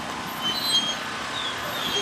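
Steady outdoor background noise, an even rush with a few faint, short high chirps scattered through it.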